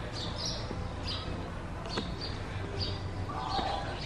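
Small birds chirping in the trees: short, high calls every half second to a second, over a steady low background rumble.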